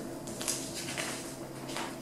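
Quiet room with faint rustling of glossy catalogue pages being handled, a couple of soft brushes of paper about half a second and a second in.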